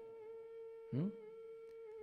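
A steady, single-pitched humming tone with overtones, held unchanged through the pause in the talk. A short rising vocal sound cuts across it about halfway through.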